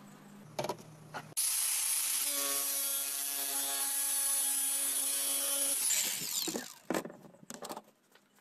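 Cordless angle grinder starting up with a steady whine and cutting through a plastic pipe for about four and a half seconds, then spinning down. A few knocks follow near the end as the cut pipe is handled.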